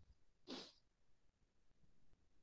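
Near silence, room tone only, with one faint, short noise about half a second in.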